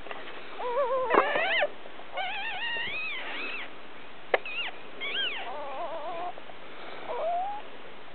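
Papillon puppies whining and squealing: a string of about five high, wavering cries, some short and some drawn out over a second or more. A single sharp click sounds about halfway through.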